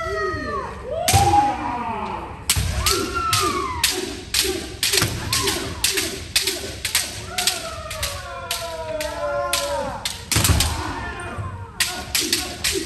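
Bamboo shinai striking kendo armour in a rapid run of sharp clacks, about two to three a second: the repeated left-right men strikes of kirikaeshi, from several pairs at once. Long shouted kiai run over the strikes, and a few heavy stamps land on the wooden floor.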